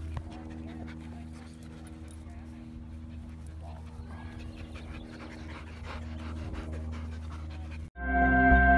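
Siberian husky panting close by, over a steady low hum, with faint voices. The sound cuts off suddenly just before the end.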